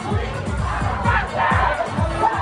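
Dance music with a fast, steady bass beat, about three beats a second, with a crowd shouting and cheering over it, loudest about halfway through.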